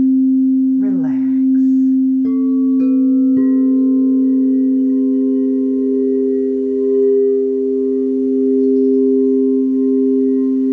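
Crystal singing bowls ringing together in sustained, overlapping pure tones. A little over two seconds in, three bowls are struck with a mallet in quick succession, each adding its own note to the ringing.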